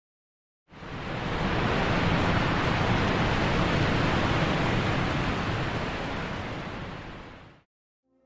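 Steady rushing ocean-ambience sound effect, fading in about a second in and fading out shortly before the end.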